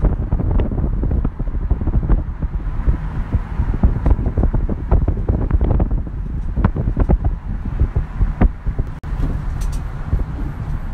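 Wind buffeting the phone's microphone over the low rumble of a car driving, with irregular gusting knocks.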